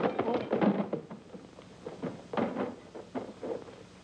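Several irregular knocks and thuds, spaced a second or less apart, after a dense stretch of sound in the first second.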